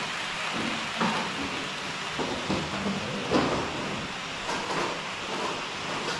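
HO-scale model train running along the track: a steady rushing noise with a few light clicks from the wheels and rail joints.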